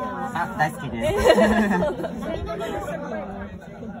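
Voices chattering: people talking over one another, with laughter.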